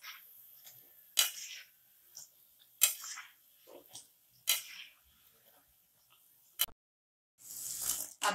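Perforated steel skimmer knocking against a wok as frying papdi are turned in hot oil: four sharp taps, one every second and a half or so, each followed by a short sizzle. Near the end the sound drops out for a moment, then louder sizzling follows.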